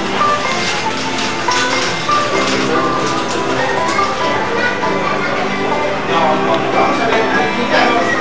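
Background music with steady held notes, with voices heard faintly over it toward the end.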